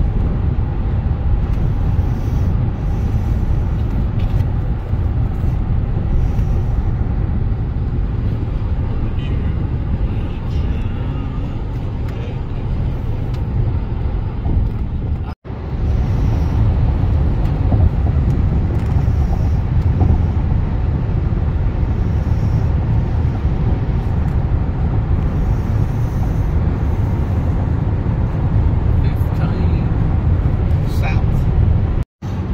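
Steady low rumble of road and engine noise inside a car cabin at freeway speed. About halfway through, the sound drops out for a split second at an edit.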